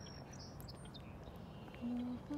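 A small bird chirping a few times briefly, high-pitched, over steady outdoor background noise; near the end a person starts humming.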